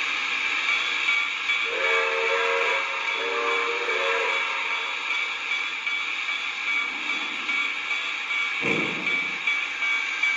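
Onboard sound system of a Lionel Vision Line New York Central Niagara steam locomotive: a steady steam hiss, two blasts of a chime whistle a couple of seconds in, then a first slow chuff near the end as the locomotive starts to move. Two whistle blasts are the signal that the train is about to proceed.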